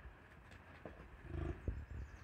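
A bison gives one short grunting call about a second and a half in, followed by a short knock.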